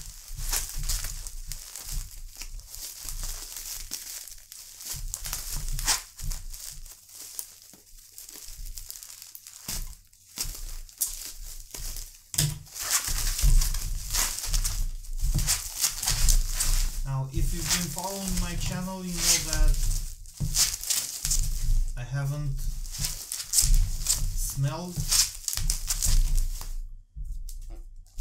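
Plastic bubble wrap being cut with scissors, crinkled and pulled away from a boxed perfume bottle: dense rustling and crackling with handling thumps on the tabletop.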